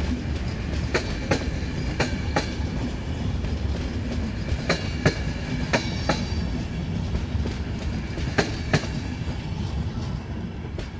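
Passenger coaches rolling past, their wheels clicking over rail joints in pairs about a third of a second apart, a pair every second or few, over a steady low rumble of wheels on rail.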